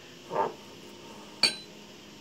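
A glazed ceramic mug clinks once with a short high ring as it is handled on the table, about one and a half seconds in. A brief softer sound comes just before, about half a second in.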